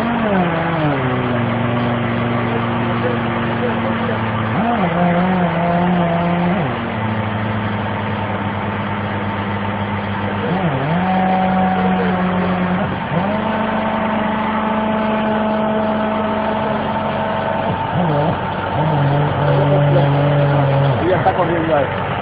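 Machinery of a 1987 Sullivan MS2A3 air track drill running with a loud, steady droning note. The pitch steps down and up to new levels several times, each change with a brief dip or glide, as the machine is worked.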